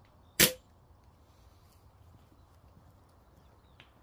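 A single sharp shot from a .22 rifle about half a second in, with a short tail. A faint click follows near the end.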